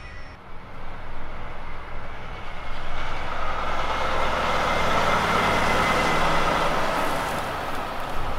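Diesel engine of a semi-trailer truck running as the rig moves past close by, getting louder from about three seconds in.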